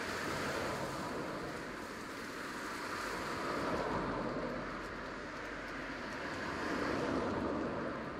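Outdoor wind noise: a steady rushing sound that swells and eases slowly a few times.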